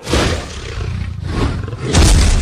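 Roar sound effect for an animated dragon: a loud, rough roar that starts suddenly and surges louder again near the end.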